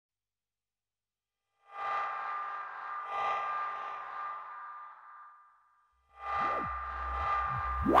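Synthesizer music in the style of late-'70s to early-'80s European horror electronica: a sustained chord swells in about two seconds in, pulses again and fades away, then a second chord enters with a deep bass drone and sliding pitch sweeps near the end.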